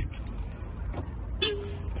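Car keys jangling in hand over a low rumble from the handheld phone's microphone, with a brief steady hum about one and a half seconds in.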